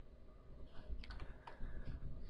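Faint low background hum with a few soft, scattered clicks.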